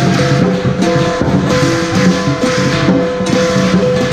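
Lion and qilin dance music: a percussion band of drum, gongs and cymbals playing with repeated cymbal clashes, under sustained ringing pitched tones that step between notes.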